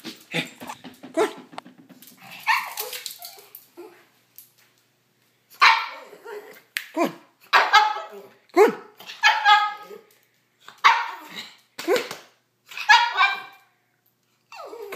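Pug barking at its owner to demand food: after a few seconds of knocks and rustling, a run of about eight short, high barks with a yowling, bending pitch, spaced about a second apart.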